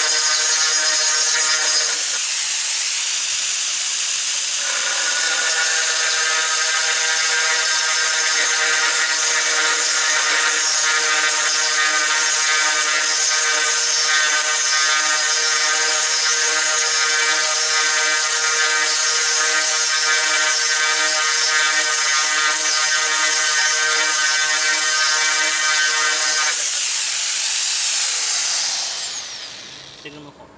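Angle grinder driving a diamond core drill bit dry into a hard ceramic tile: a loud, steady motor whine over gritty grinding hiss. The whine drops out for a couple of seconds about two seconds in, then returns. Near the end the tool is lifted and the motor winds down with a falling whine.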